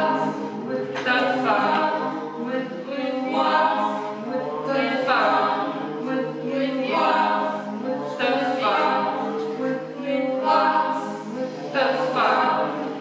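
Unaccompanied mixed choir of men's and women's voices singing: a low held note runs beneath repeated phrases that swell and fade every second or two.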